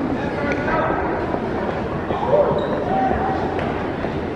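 Crowd chatter and talking voices echoing in a basketball arena, with a few basketballs bouncing on the hardwood court.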